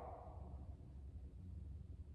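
Quiet room tone: a faint, steady low hum with no other distinct sound.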